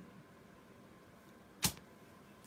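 Near silence, broken once by a single short, sharp click about one and a half seconds in.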